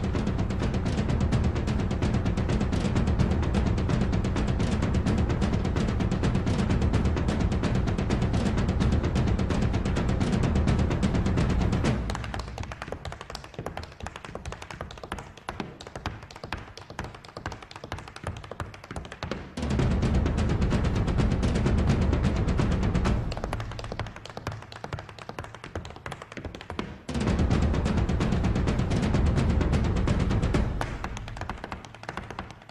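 Irish step-dance music with drumming and rapid hard-shoe tapping. Twice the music drops away and leaves the taps on their own: about twelve seconds in for some seven seconds, and again for a few seconds past the twenty-second mark.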